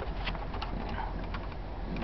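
Faint, scattered clicks and taps of plastic dashboard trim being handled and fitted, over a low steady background hum.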